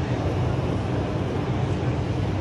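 Steady background din inside a large exhibition marquee, with a continuous low hum under an even wash of noise.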